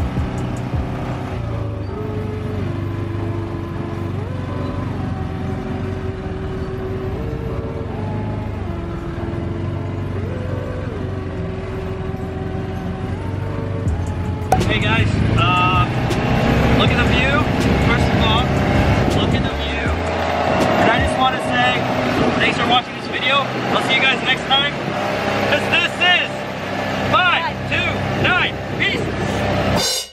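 Quad bike (ATV) engine running steadily during a dirt-trail ride. About halfway in, the sound turns louder, with people's voices over a running off-road buggy.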